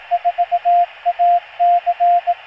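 Morse code: a single steady-pitched tone keyed in dots and dashes over a steady radio hiss. It spells out the ham call sign KM4ACK; this stretch holds the end of the '4', then 'A', 'C' and the start of the final 'K'.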